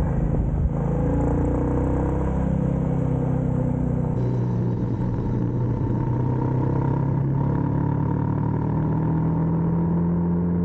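A 350 cc motorcycle's engine running at cruising speed while being ridden, its note shifting a little with the throttle and rising near the end, over steady wind rush on the microphone.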